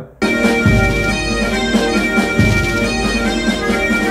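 Bagpipes playing a tune of held notes over a steady drone, starting just after a brief pause.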